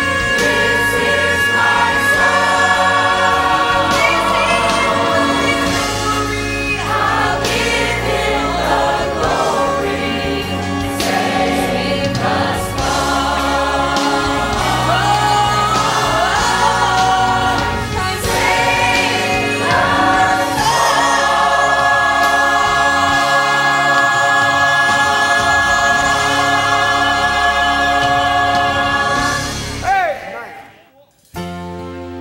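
A church choir and a female soloist singing a gospel song, the voices moving through the melody and then holding one long final chord for the last several seconds before cutting off together at the end.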